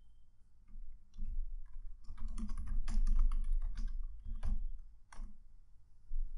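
Typing on a computer keyboard: a quick run of keystrokes from about a second in until past five seconds, entering a short terminal command.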